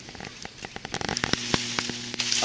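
Leaves and twigs rustling and snapping against the camera as it is pushed through dense shrub branches, a quick run of crackling clicks that grows denser in the second half. A low steady hum joins in about a second in.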